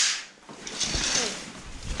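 Room curtains being pulled open by hand: a sharp swish of fabric and runners sliding along the rail right at the start, then a softer rustle as the curtain keeps moving.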